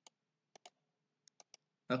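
Computer mouse clicking: about six short, sharp clicks, a couple of them in quick pairs.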